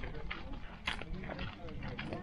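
Faint voices in the background over steady rumbling movement noise from a camera riding on a walking dog, with a few short clicks or crunches on the gravel path.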